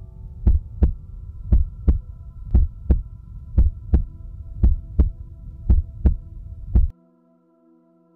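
Heartbeat sound effect: a double thump about once a second over a low hum, cutting off suddenly near the end.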